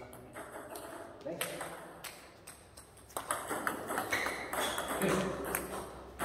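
Table tennis ball in play, served and returned: a series of short sharp clicks as it strikes the bats and bounces on the table, coming more often from about three seconds in.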